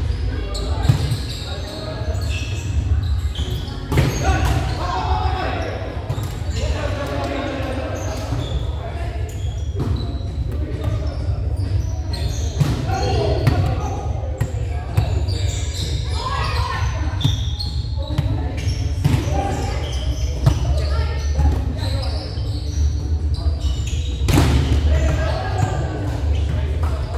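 Indoor volleyball play in an echoing gymnasium: a volleyball being struck by hands and bouncing off the wooden floor in sharp, scattered hits. Players shout and call out, over a steady low rumble.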